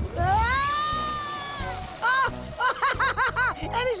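A cartoon water gush from a town fountain coming back on: a sudden hiss with one long rising-and-falling whooping glide over it. It is followed by a quick run of short, bouncing notes of playful music.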